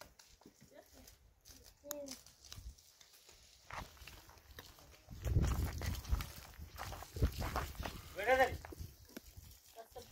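Footsteps and low rumbling knocks on a stony path, heaviest about halfway through. A farm animal's quavering bleat comes near the end, and a fainter call comes about two seconds in.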